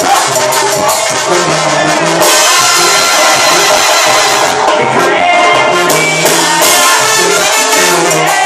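Live banda music at full volume: tuba, clarinets and drums playing a rhythmic Mexican brass-band number, brighter from about two seconds in.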